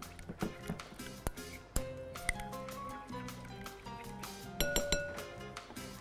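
Background music with a metal utensil clinking several times against a glass bowl as a creamy yogurt and mayonnaise dressing is stirred.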